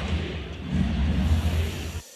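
A loud sound clip with a heavy, pulsing bass, cut off abruptly at the end.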